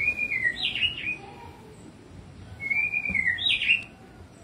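A songbird in an aviary calls the same short phrase twice, about two and a half seconds apart. Each phrase is a wavering falling whistle followed by a quick rising-and-falling note.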